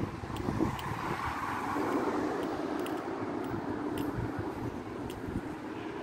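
Street traffic noise from a motor vehicle passing nearby, swelling about two seconds in and staying steady, over a low rumble of wind on the microphone.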